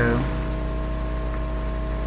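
A steady machine hum with a few unchanging tones held under it, level and unbroken.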